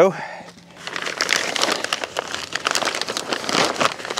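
6 mil plastic sheeting crinkling and rustling as it is handled and pulled into place, a dense crackle that starts about a second in and keeps on.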